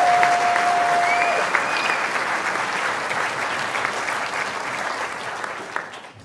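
Audience applauding, with one long held note above the clapping for about the first second and a half; the clapping fades near the end.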